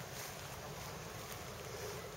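Wind buffeting the microphone outdoors: a steady, uneven low rumble under a hiss of open-air noise, with a few faint clicks.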